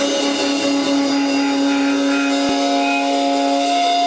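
Rock band playing live: electric guitar holding sustained notes over a drum kit, loud and steady.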